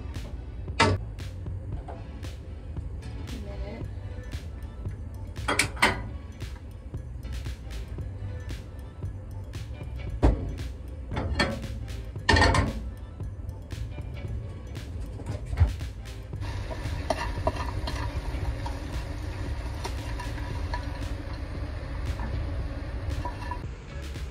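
Background music over kitchen cooking sounds: a frying pan and utensils knock and clink against a gas stovetop several times, then a steady even noise runs through the last third.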